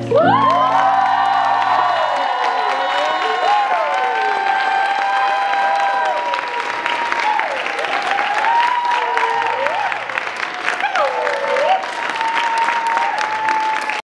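Audience applauding, cheering and whooping at the end of a song. The looped guitar and singing stop right at the start, and the clapping grows thicker about halfway through.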